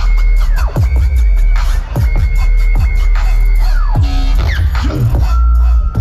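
Loud electronic dance music from a live DJ set over a festival sound system. Heavy sustained bass runs under a high synth note that swoops sharply down in pitch about once a second, with fast ticking percussion on top.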